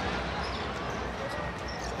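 Steady crowd murmur in an indoor basketball arena, with a basketball being dribbled on the hardwood court.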